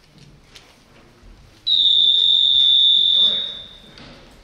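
A single long whistle blast: one steady high note starting a little under two seconds in, held for about a second and a half and then fading. It is typical of the timekeeper's whistle that ends a kendo demonstration bout when time is up.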